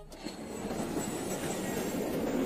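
Film sound effect of a spaceship engine: a steady rushing rumble that slowly grows louder.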